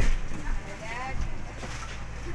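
Passengers chattering in a crowded ferry cabin over the vessel's steady low hum, with a brief knock right at the start.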